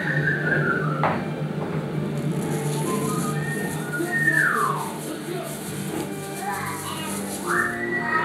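High whistled notes sliding downward, one at the start and another about four seconds in, over a steady low hum.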